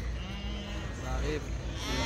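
Sheep bleating faintly in the background, with low voices underneath.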